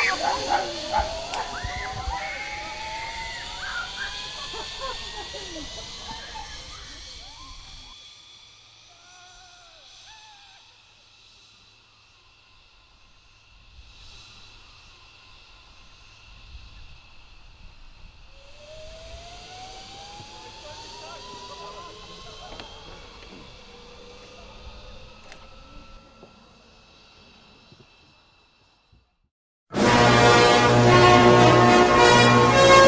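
Zip wire trolley pulleys running along the cable, a whine that rises in pitch as the rider speeds up, with shrieks and voices at the start. It fades, and a second rising whine begins a little past the middle.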